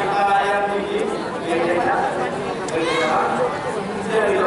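Speech only: a man talking into a handheld microphone, with crowd chatter behind him.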